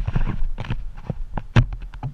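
Handling noise from a kayak-mounted camera being grabbed and turned: irregular sharp knocks and rattles, loudest at the start and again about one and a half seconds in, trailing off into lighter ticks.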